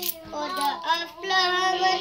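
A young child singing, ending on one long held note near the end.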